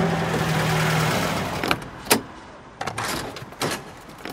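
A vehicle engine running, fading away over the first second or so, then a few short, sharp knocks.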